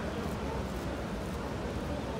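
Steady city-street background: a low traffic rumble with faint, distant crowd voices.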